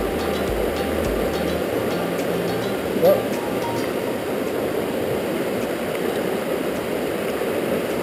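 Steady rushing of a large, fast river running high with heavy flow, the current breaking over rocks close by.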